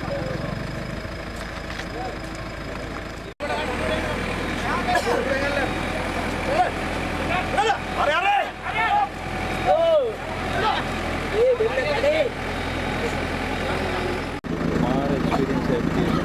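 A backhoe loader's engine idling steadily, with men's voices calling out and talking over it through the middle of the clip. The sound changes abruptly twice, at edits, about three seconds in and near the end.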